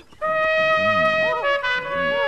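Trumpet playing one long held note that starts a moment in and steps down slightly in pitch about one and a half seconds in.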